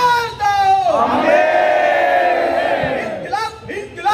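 A man shouting protest slogans into a microphone, each call drawn out into a long held cry, with a crowd shouting along. Shorter, choppier shouts come near the end.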